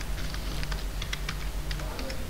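Computer keyboard typing: a quick run of key clicks, several a second, as a word is typed out, over a steady low hum.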